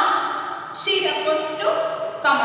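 Speech only: a woman's voice talking.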